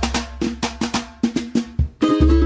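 Pagode baiano (swing) band music with a percussion break: a fast run of sharp drum and snare strokes over a low bass note that fades. The drumming stops abruptly at the very end, just as the full band comes in.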